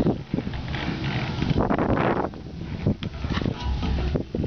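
A person climbing down a trailer's side ladder: irregular knocks and scuffs of footsteps on the rungs with handling noise, and a short rush of noise about halfway through.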